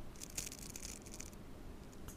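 Brief dry rustle with one light tick, lasting about a second, as a hand holding two bamboo-handled brushes comes down onto the painting paper.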